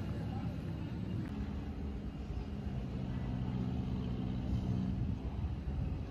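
Low, steady rumble of a motor engine heard over outdoor ambience, with a faint hum that comes up through the middle.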